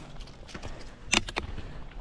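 Rollerski pole tips striking the asphalt: a quick cluster of sharp clicks a little over a second in, over the low steady rumble of the rollerski wheels rolling.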